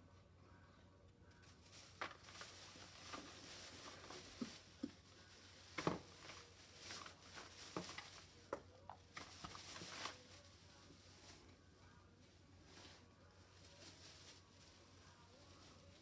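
Faint rustling of a plastic shopping bag being rummaged through, with a few light knocks and clicks, the sharpest about six seconds in; it dies down after about ten seconds.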